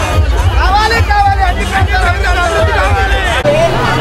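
Crowd voices over loud music with a heavy low beat, with one voice held in long, bending lines as in chanting or singing. About three and a half seconds in, the sound cuts to street babble over a steady low hum.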